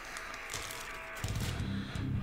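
Faint rustle and crinkle of a clear plastic bag holding model-kit parts being handled. A louder low pitched sound comes in just over a second in.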